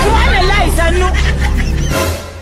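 Voices talking over each other above a steady background music bed with a held low note; the sound starts fading right at the end.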